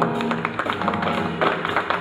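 Live jazz big band in a rhythm-section passage, with quick, busy drum kit hits and a few held low notes under them while the horns lay out.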